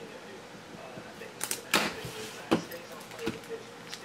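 Trading cards and plastic card holders being handled on a table: a few short clicks and rustles, the first about a second and a half in and the next about a second later, over a faint steady hum.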